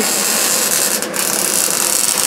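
Wire-feed (MIG) welder arc crackling steadily as a steel roll-cage bar is welded onto a car body, with a short break about a second in.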